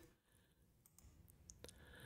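Near silence: room tone, with two faint clicks about a second and a half in.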